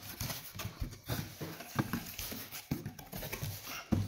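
Cardboard shipping box being handled: flaps rustling and scraping against the shoe box inside, with irregular light knocks and a sharper knock near the end.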